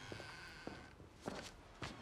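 Faint footsteps, about four steps a little over half a second apart, after a door has opened.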